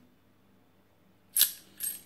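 Brass rifle cartridge cases clinking together in a hand: a sharp metallic clink about a second and a half in, then a lighter one just before the end.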